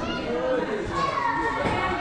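Background voices of children and adults talking and calling out, with one higher voice held for about a second near the end.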